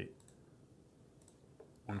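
Faint computer mouse clicks, in two quick pairs about a second apart.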